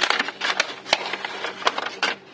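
Frosted plastic envelope crinkling and rustling as a stack of photocards is slid out of it, with a sharp snap about a second in and another near the end.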